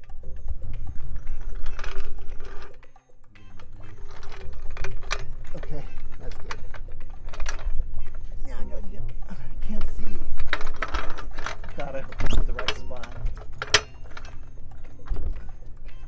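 Pittsburgh 3-ton low-profile steel floor jack being rolled across concrete and set under the car's front lift point, its casters and steel frame clicking and rattling, with music playing alongside.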